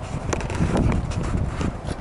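Wind buffeting the microphone on an open, high observation deck: an uneven, gusting rumble, with a few light clicks.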